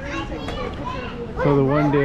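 Background chatter of visitors with children's voices; about one and a half seconds in, a man's voice close to the microphone begins speaking.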